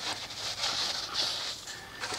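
A bristle wheel brush scrubbing a wet, soapy chrome wheel, a faint uneven rubbing and swishing of bristles against the metal.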